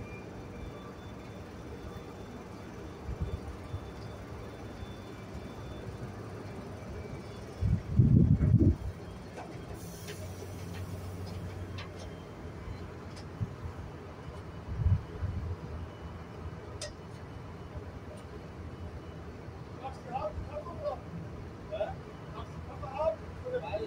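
Tractor diesel engine running steadily in the background, with a short low rumble about eight seconds in and another, smaller one about fifteen seconds in. Faint voices come in near the end.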